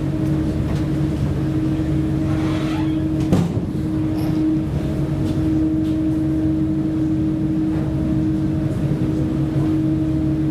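Ferry's engines droning steadily, a constant low hum with a higher tone above it, heard from the open deck; a single short knock sounds about a third of the way in.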